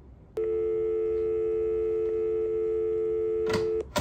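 Telephone dial tone: a steady two-note hum, the 350 and 440 Hz pair of a North American line. It comes in about half a second in and cuts off near the end, with a couple of sharp clicks as it stops.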